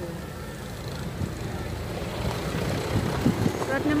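A vehicle engine running, its low rumble growing steadily louder, with wind on the microphone.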